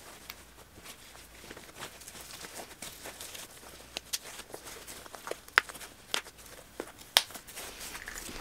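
Cloth diaper cover being wrapped and fastened over a prefold on a plastic doll: soft fabric rustling with a scattering of sharp clicks, the loudest in the second half.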